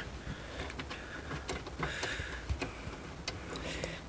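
Faint, scattered light ticks and clicks from a T25 Torx screw being backed out of the fuel door release actuator's bracket.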